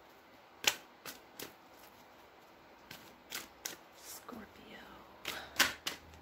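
A deck of tarot cards being shuffled by hand: scattered sharp snaps and slaps of the cards in small clusters, the loudest cluster near the end.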